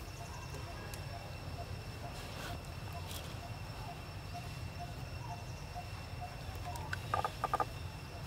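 Outdoor ambience: a steady high insect drone over a low rumble, with a faint short call repeated evenly a couple of times a second. Near the end comes a quick run of four short squeaks.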